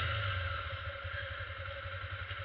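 Honda motorcycle engine running at low revs, a low pulsing rumble that eases off as the bike slows, with a steady hiss of wind and road noise on the action camera's microphone.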